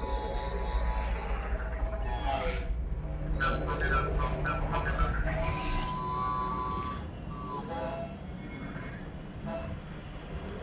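Soundtrack music from a sci-fi short film, over a low rumble that eases off about six seconds in.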